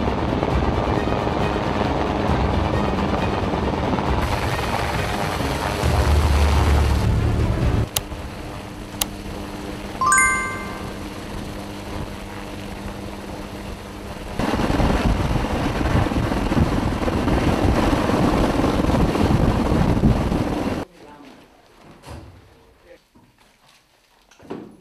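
Helicopter rotor and engine noise, loud and steady, in several edited segments. A quieter middle stretch carries a steady hum, two clicks and a short series of electronic beeps. Then the loud rotor noise returns and cuts off sharply near the end.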